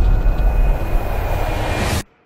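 Logo-intro sound effect: a loud, deep rumble with a hiss over it, like a passing jet, that cuts off abruptly at the end.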